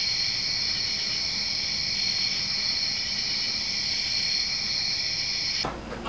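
Crickets chirping in a continuous high-pitched chorus at night, cutting off suddenly near the end.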